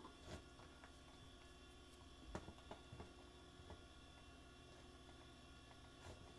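Near silence: a faint steady electrical hum, with a few faint clicks in the first half.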